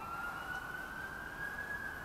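A faint distant siren: one long thin tone that glides slowly up in pitch and levels off.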